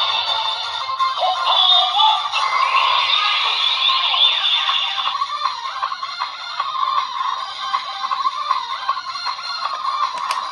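DX Gotcha Igniter transformation toy playing its electronic transformation music with a synthetic voice singing along, through its small built-in speaker: thin, with no bass.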